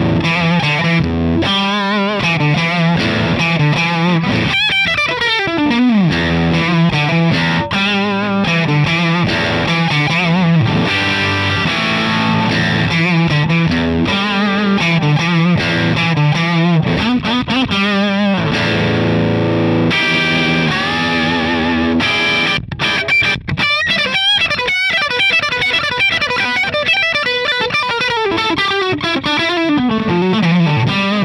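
Suhr Custom Classic electric guitar played through a Ceriatone Prince Tut, a Princeton Reverb–style tube amp, with its volume at about 3 o'clock, breaking up into overdrive. Improvised lead lines with string bends and vibrato, a long downward slide about five seconds in, and a run of short choppy chords a little past the middle.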